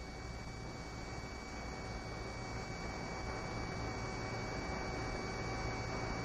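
Steady hiss and hum from an old radio-intercom recording between transmissions, with two faint, thin, high steady tones running through it.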